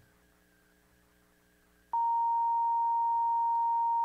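Near silence for about two seconds, then the Roland GR-700 guitar synthesizer's self-oscillating filter sounds a single steady pure sine tone near 1 kHz, starting abruptly when a string is struck. The tone is not yet exactly at the 1 kHz reference: the filter still needs tuning.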